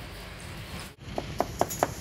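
Cleaver chopping a cucumber on a thick wooden chopping block: about five quick, sharp knocks in the second half, roughly five a second.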